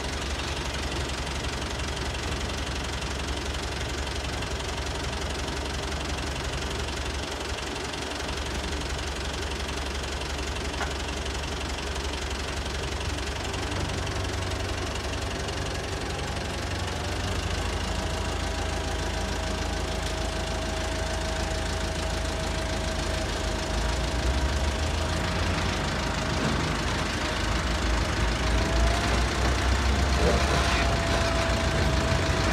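Kubota M7000 DT tractor's diesel engine running steadily as the tractor moves slowly forward, getting a little louder in the second half, when a steady whine joins in.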